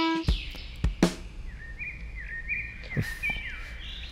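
Quiet background with a small bird chirping: a short series of quick, rising-and-falling chirps in the middle. A few soft knocks are scattered through it.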